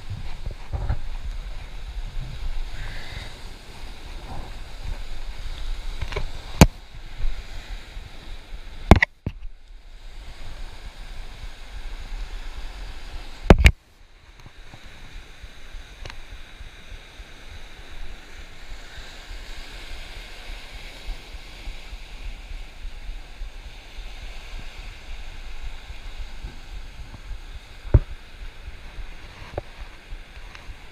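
Waves breaking on rocks and wind on the microphone make a steady noisy rush. Four sharp knocks break it, the loudest about nine and fourteen seconds in.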